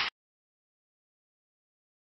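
The tail end of a gunshot fired into a ballistic pendulum block, a short loud burst that stops about a tenth of a second in. The rest is dead silence.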